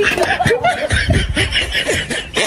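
A person laughing in a quick run of short chuckles.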